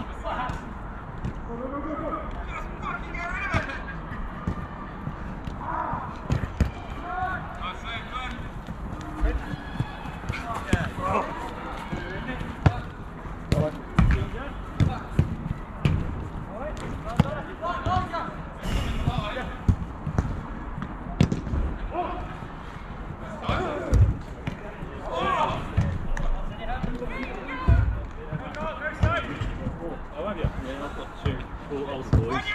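Footballers shouting and calling to one another during a game on an artificial-turf pitch, with sharp thuds of the ball being kicked scattered throughout.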